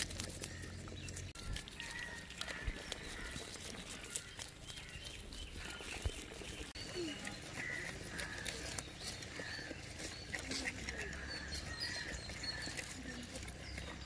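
Knife scraping scales off and cutting a whole fish on a wooden board: scattered scratchy clicks, densest in the first second, with birds chirping in the background.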